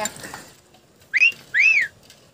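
A two-note wolf whistle a little past a second in: a short rising note, then a longer note that rises and falls.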